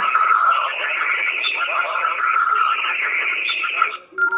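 Handheld two-way radio's speaker playing received analog FM audio: a steady, tinny hiss with faint garbled voice in it. It drops away at the very end.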